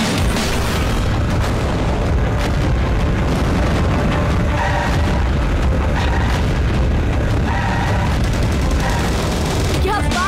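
Cartoon action sound effects: a steady deep rumble with booms, mixed with background music that has short repeated notes in the second half.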